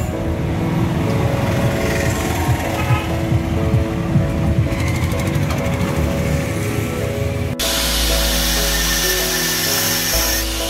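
Background music plays throughout. About three-quarters of the way in the sound changes suddenly and a hand-held angle grinder runs steadily on metal under the music.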